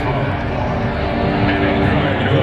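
Stadium public-address sound over a large crowd's din: a voice and sustained low music notes, heavy with stadium echo.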